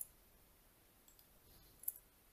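Near silence with two faint, sharp clicks, one at the very start and one near the end, from someone operating a computer to run code cells.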